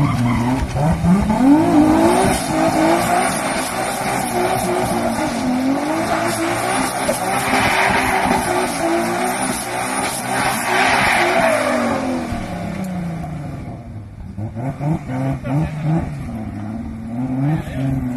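A car spinning donuts, its engine revving hard up and down while the tyres squeal continuously. The squeal dies away about two-thirds of the way through, leaving the engine revving in short blips.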